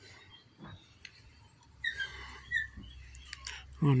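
Faint bird chirps, a few short high notes about halfway through, over a low background hum, with a couple of small clicks. A voice comes in right at the end.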